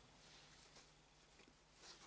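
Near silence: room tone, with a faint rustle of fabric being handled near the end.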